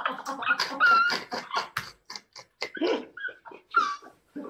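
A group of people laughing together in short choppy bursts, with a high squeaky laugh about a second in and another near the end.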